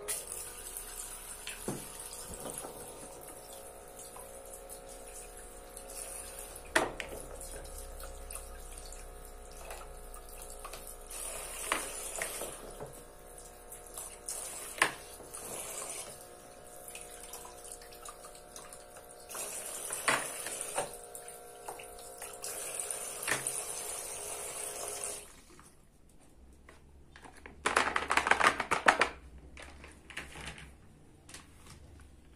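Toy sink's battery water pump humming while water runs from its plastic faucet into the basin, with occasional clicks and taps as toy food and ducks are handled. The pump and water stop about 25 seconds in, and a short, louder rush of noise follows near the end.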